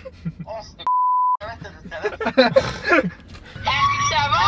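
A single steady high-pitched beep lasting about half a second, a little under a second in, with the speech muted beneath it: an edited-in censor bleep covering a spoken word. Talking resumes right after it.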